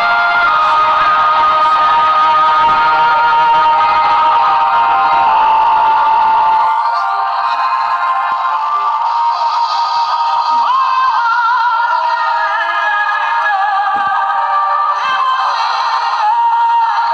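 A song with singing playing steadily, heard thin with little bass. A low rumble underneath drops away about seven seconds in, leaving only the melody and voice lines.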